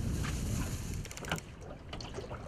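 Low rumble of wind and sea around a small boat on open water, with a few light clicks about a second in, then quieter.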